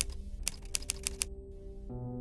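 Typewriter keys clacking in a quick run of strikes through the first second or so, over dark background music with held low tones.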